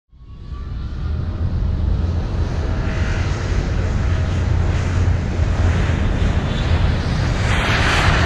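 Aircraft engine noise: a steady, loud low rumble with a hiss over it. It fades in over the first second, and the hiss grows stronger near the end.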